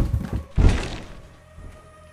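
Two heavy thuds about half a second apart, the second louder, each with a short low rumbling decay, over a faint musical drone.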